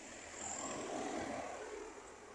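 A pickup truck driving past on the road, its engine and tyre noise swelling about half a second in and fading as it moves away.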